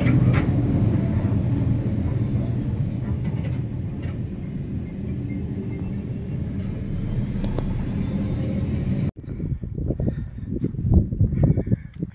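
Mountain train carriage running, heard from inside: a steady low rumble that eases slightly partway through. It cuts off suddenly about nine seconds in, replaced by irregular knocks and rustling on the microphone outdoors.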